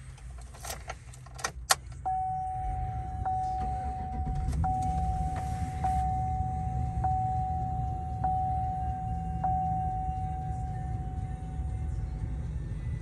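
Keys jangle and click in the ignition, then about two seconds in the 2009 Chevrolet Silverado 1500's engine starts and runs at a steady idle, heard from inside the cab. Over it a dashboard warning chime repeats about once a second.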